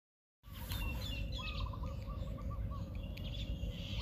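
Birds chirping and calling in short repeated phrases over a steady low background noise, starting about half a second in.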